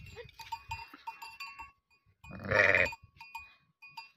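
A sheep bleats once, a single long wavering call about two seconds in.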